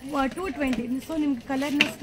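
A woman speaking, with a brief sharp click near the end.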